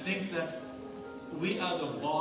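A man speaking quietly over soft background music with long held notes.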